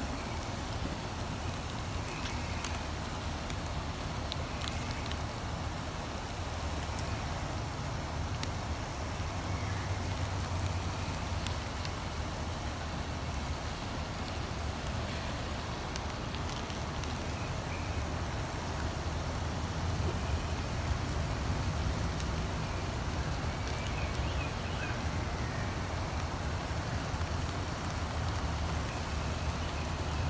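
Steady low rumble of wind buffeting the microphone outdoors, swelling and easing a little, with a few faint clicks.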